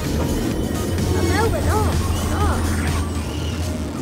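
Background music and voices over a steady low hum, with a few rising-and-falling pitched notes about a second in.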